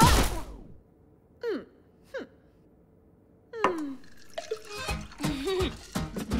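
A cartoon character's short groans sliding downward in pitch: two faint ones over near quiet, then a louder one. Cartoon music starts up again near the end.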